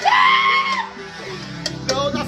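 A person's high-pitched scream, one held note lasting under a second at the start, over background music that carries on quieter afterwards.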